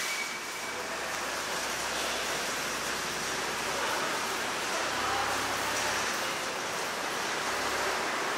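Steady rushing background noise of an underground parking garage, with a faint low rumble underneath that swells slightly about five seconds in.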